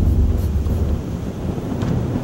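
Wind buffeting the microphone over rough open water, a heavy low rumble that eases off about a second in.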